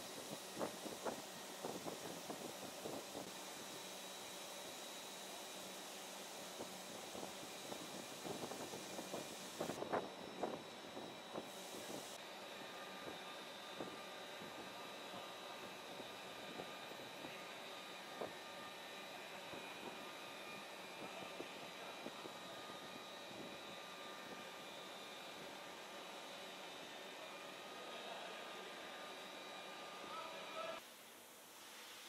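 Electric rotary polisher running with a foam pad on a car body panel: a steady hiss with a faint high whine, and scattered light knocks and taps in the first ten seconds or so.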